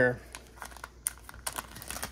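Small clear plastic baggie crinkling in the hands as it is handled, with scattered sharp crackles.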